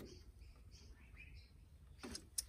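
Near silence with a few faint, short bird chirps in the background.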